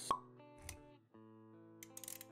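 Intro music of held notes with animation sound effects: a sharp pop just after the start, a dull low thump a little later, a brief drop-out about a second in, then the notes resume with a few clicks near the end.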